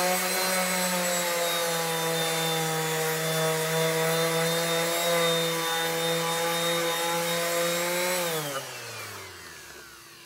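Electric rotary sander running steadily with its sanding disc rubbing on an aluminium truck rim. About eight seconds in it is switched off and winds down, its whine falling in pitch as it slows to a stop.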